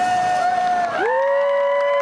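Voices of Native American singers holding the final long notes of a greeting song, with the rattles and hand drum silent. One steady held note gives way, about a second in, to several voices rising together into a higher sustained note that drops away at the end.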